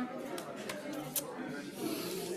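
Low, indistinct voices in a room, with three sharp clicks, the loudest a little past a second in.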